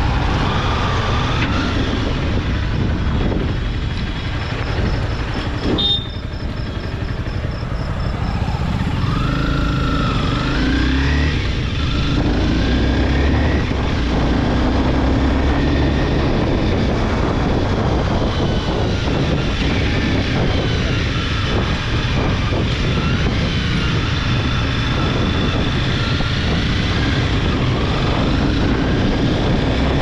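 Honda CBR250R's single-cylinder engine running on the move in traffic, its pitch rising as it is revved up about ten seconds in and rising and falling again later, over steady road and wind noise. A sharp click about six seconds in.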